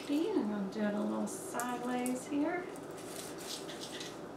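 A woman's voice making a few short, low sounds in the first half, over soft rustling of artificial foliage being handled on a grapevine wreath.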